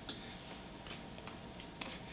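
A few faint light clicks and taps over quiet room tone, the sharpest near the end.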